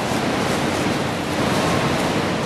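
A steady rushing noise, even and fairly loud, with no pitch to speak of.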